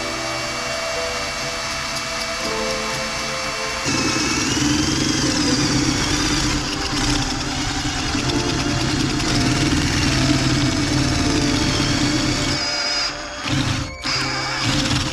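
Cordless drill with a masonry bit boring a hole through the base of a ceramic bonsai pot: a steady motor whine with grinding, louder from about four seconds in and breaking into short stop-start bursts near the end. Background music plays underneath.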